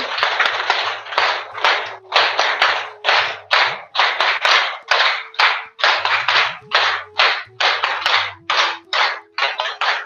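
Hands clapping in a steady, even rhythm of about two claps a second, a round of applause asked for at the end of an exercise.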